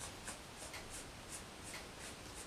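Faint, breathy laughter held back: a run of short hissing puffs of breath, about three a second.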